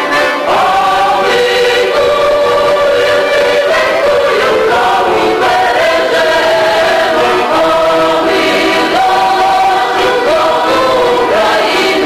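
Choir of a Ukrainian song and dance ensemble singing a folk song in several-part harmony, with long held notes that slide smoothly from pitch to pitch.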